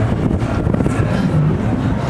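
Wind rushing over the onboard microphone of a swinging fairground thrill ride, with a low steady hum underneath.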